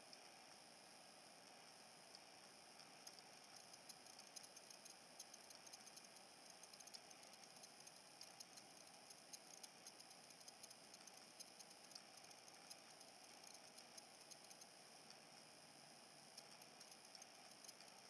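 Near silence: a very faint heat gun blowing, with faint scattered ticks, fading out near the end.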